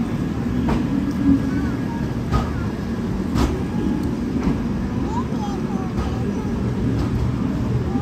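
Passenger train coaches rolling slowly out of a station, a steady rumble of wheels on rails with a few sharp clicks as they cross rail joints and points.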